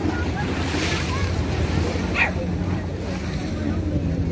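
Waves washing against a stone seawall, with wind on the microphone and a steady low hum underneath. A short high call, like a bird's, cuts through about halfway.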